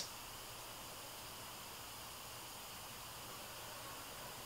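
Faint steady hiss of room tone, with no distinct event.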